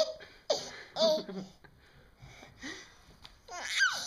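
Baby laughing in short separate bursts with quiet breaths between, ending in a loud high squealing laugh that falls in pitch.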